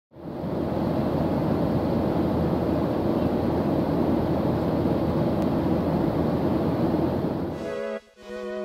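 Jet airliner cabin noise in flight: a steady low rush of engine and air noise, fading out near the end.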